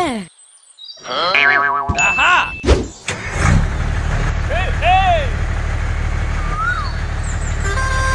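Dubbed cartoon sound effects: springy, boing-like tones with rising and falling glides. About three seconds in, a truck engine sound starts and then runs steadily, with a few more gliding tones over it.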